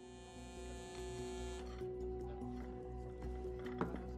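Smartphone buzzing with an incoming call, a steady buzz that cuts off suddenly about a second and a half in, over soft background music; a light tap near the end.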